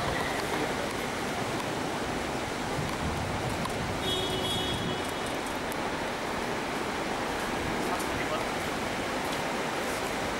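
Crowd ambience: indistinct voices over a steady noisy hiss, with a brief high tone about four seconds in.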